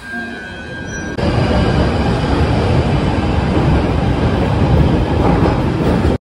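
London Underground tube train moving along a station platform: a loud, steady rush of wheel and motor noise that cuts in abruptly about a second in. Before it, quieter platform sound with a thin steady whine.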